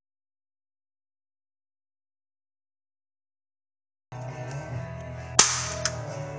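Silence for about four seconds, then guitar music comes in. About a second later a hand slaps a sticky note onto a forehead: one sharp slap with a short hiss after it, then a smaller click.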